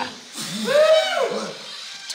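Speech: a voice calling out encouragement, with no other sound standing out.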